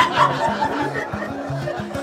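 Audience laughing over a guitar that keeps playing short low notes, the laughter dying down toward the end.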